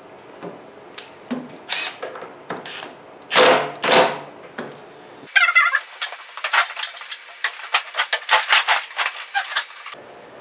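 Cordless Milwaukee stubby impact driver run in two short bursts about three seconds in, snugging the snowblower's carburetor float bowl back on. From about five seconds in there is a quick, irregular run of sharp clicks and rattles.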